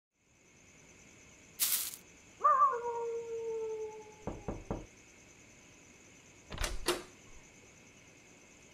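Knocking on a wooden door, three quick knocks about four seconds in and two more thuds a couple of seconds later, over a steady cricket chirping background. Earlier there is a short burst of noise and a long falling tone.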